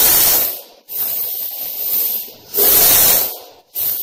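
Heavy steel chain rattling and sliding link over link as a pile of it is lowered and lifted, in several surges broken by brief pauses.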